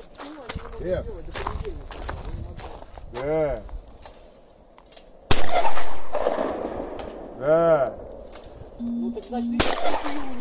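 Two shotgun shots at clay targets, the first about five seconds in and the louder of the two, ringing out over the field, the second near the end. A short shouted call comes about two seconds before each shot.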